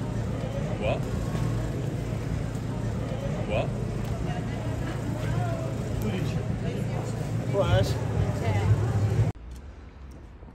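Busy city street ambience: a steady traffic rumble with snatches of passers-by talking. It cuts off suddenly near the end to a much quieter background.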